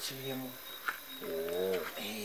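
A man's voice: a short low utterance, then about a second in a long drawn-out, wavering vowel held for most of a second, a low coo-like sound. A faint steady high-pitched tone runs behind it.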